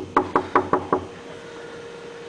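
Knuckles knocking on a door five times in quick, even succession within about a second.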